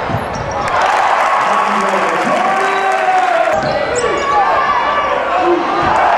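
Arena crowd noise at a basketball game: voices in the stands over a basketball bouncing on the hardwood court.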